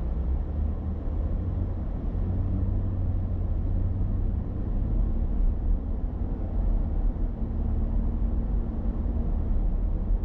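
A car driving along a city street, with a steady low rumble of road and engine noise heard from inside the cabin.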